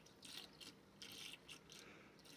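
Near silence: a faint steady hum of the small motors spinning the water vortices in the tub.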